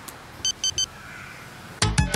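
Three short electronic beeps in quick succession from a handheld device, then music with sharp percussive hits begins near the end.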